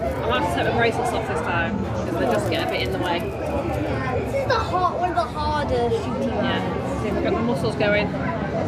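People talking, with background chatter around them.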